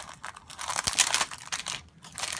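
Clear plastic cellophane sleeve crinkling as it is opened and a stack of sticker sheets is slid out, with crackles loudest about a second in.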